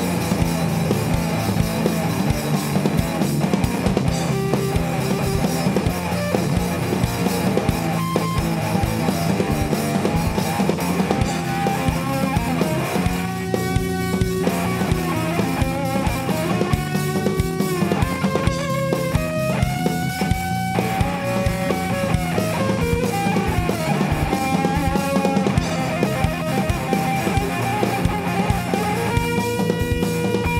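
Rock band playing live with drum kit and electric guitars, an instrumental passage without singing. From about halfway through, a melodic lead line bends up and down in pitch over the band.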